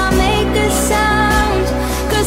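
Nightcore edit (sped up and pitched up) of an electronic pop song: a high female vocal sings a melody over synth backing.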